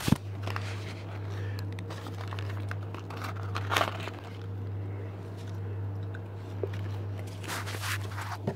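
A cardboard takeaway chicken box being handled and opened close to the microphone: a knock at the start, then scattered scrapes and crinkling rustles, over a steady low hum.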